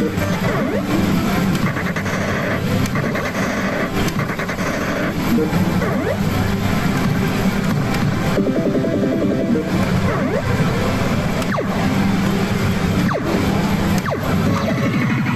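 Famista Kaidō-ban pachislot machine playing its game music and sound effects as the reels spin, over the dense, constant din of a slot parlour.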